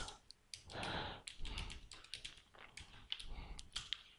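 Faint typing on a computer keyboard: soft, quick key clicks in short runs with pauses between.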